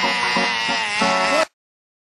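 Music with a wavering, pitched sound over it, which cuts off suddenly about one and a half seconds in, leaving silence.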